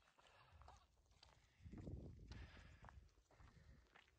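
Faint footsteps on a dirt road, in near silence, a little louder around the middle.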